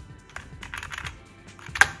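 Computer keyboard keys pressed over and over as a BIOS voltage list is stepped through, a run of light clicks, then one sharper, louder key press near the end as the 1.200 V setting is confirmed. Quiet background music plays underneath.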